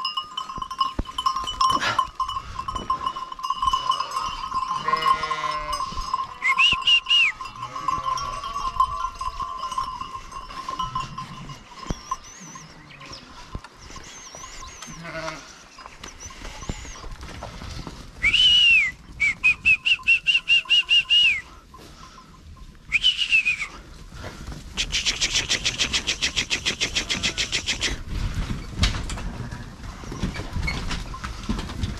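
Sheep bleating a few times in a pen, mixed with short high-pitched whistling sounds. A fast rattling buzz comes in near the end.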